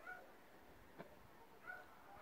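Two faint, short bird calls about a second and a half apart, with a soft click between them.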